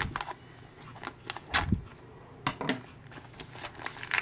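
Scissors snipping through the clear plastic shrink-wrap on a small toy basket, with the film crackling as it is handled. The sound comes as irregular sharp snips and short crackles, with small clusters about one and a half and two and a half seconds in.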